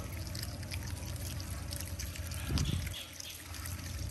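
Water from a garden hose pouring steadily into a metal bowl of water and fish, with scattered small clicks and splashes as otters feed at the bowl. A brief low thump comes about two and a half seconds in.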